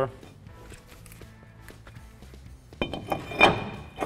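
Cast-iron brake rotor being flipped over and slid back onto the wheel hub, with a loud metallic clank and brief ringing about three seconds in.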